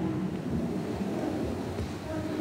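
Low, irregular rumbling and rustling noise from a body-worn microphone as its wearer moves and handles a book.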